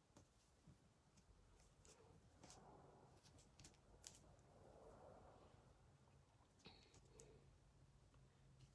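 Near silence, with faint soft rubbing and a few small clicks from hands pressing and smoothing air-dry clay into a mould.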